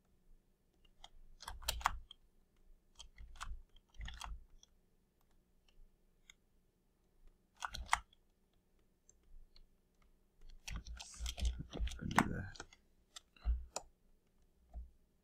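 Irregular clicks and taps of computer input at a digital drawing setup, coming in short clusters with a longer, busier run of clicking about two-thirds of the way through.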